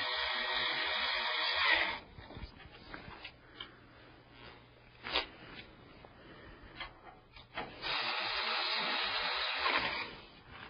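Powered screwdriver driving the hard drive's mounting screws into the metal drive cage of a PC case. It runs in two spells of about two seconds each, one at the start and one near the end, with small clicks and taps between.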